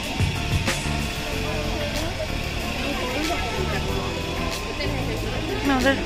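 Music with a bass line that steps from note to note, with voices and a laugh over it near the end.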